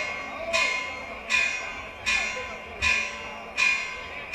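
A bell tolling with even strokes about every three-quarters of a second, each stroke ringing on and fading before the next, over crowd voices.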